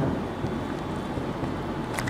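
Steady rushing background noise with a low rumble, with no distinct events.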